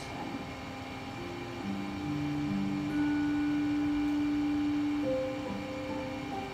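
Slow background music from a TV drama's score, long held notes changing pitch every second or so, played through a television speaker and picked up in the room.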